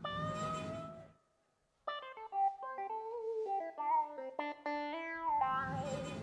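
A live band starts a funk number: one held note, then a short silent break, then a busy run of stepping melodic notes.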